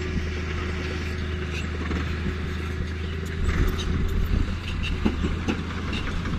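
Loaded dump truck's diesel engine running with a steady low rumble as the truck moves slowly.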